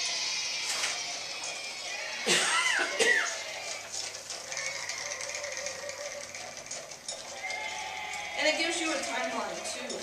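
Music and crowd cheering from a horse-racing note-naming game playing through a tablet speaker, with a loud call sliding down in pitch, like a horse's whinny, about two seconds in.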